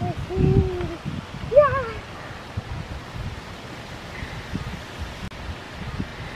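A young child's voice: a held 'ooh' lasting about a second, then a short rising-and-falling cry about a second and a half in, the loudest sound. After that, steady outdoor hiss with wind rumbling on the microphone.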